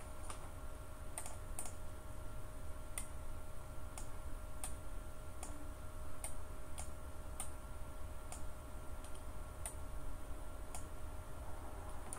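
Irregular clicking at a computer, about one or two sharp clicks a second, over a steady low electrical hum.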